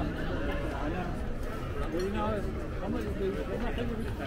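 Voices of several passers-by talking nearby, over a steady low rumble.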